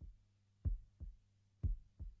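Recorded heartbeat effect on the music track: a soft, low double thump, a strong beat followed by a weaker one, about once a second, over a faint steady low hum.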